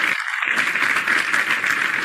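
Applause: steady hand clapping, heard through a video call's audio.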